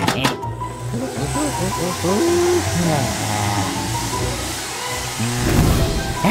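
Electric hand dryer blowing a steady rush of air, with a cartoon character's wordless strained vocal noises over it and a louder burst near the end. Background music plays underneath.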